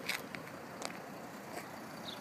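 2012 Mercedes-Benz E350 BlueTEC's 3.0-litre V6 turbodiesel idling, very quiet: only a faint, steady hum, with a few light clicks over it.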